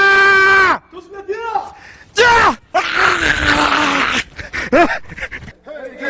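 A man screaming as he jumps from an 11 m mock parachute-training tower: a long, steady, high-pitched yell that breaks off just under a second in. Then a short falling cry and a loud, harsh, raspy shout of about a second and a half, followed by a few short cries.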